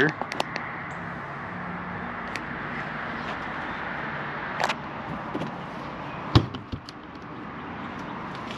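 Steady outdoor background noise with a faint low hum and a few scattered knocks and clicks, the loudest about six seconds in.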